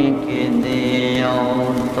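A man's voice chanting a melodic Bengali devotional refrain into a microphone in long, drawn-out sung notes.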